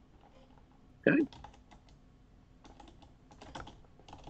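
Typing on a computer keyboard: faint, quick runs of key clicks starting about a second in, in uneven bursts.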